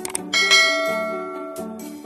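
Intro music with a bell chime sound effect: a couple of short clicks, then a bright ding about a third of a second in that rings out and fades over about a second and a half.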